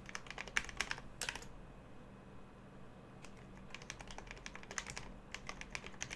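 Typing on a computer keyboard: rapid key clicks in two bursts, one in the first second or so and a longer one from about three seconds in to near the end, as an email address is entered.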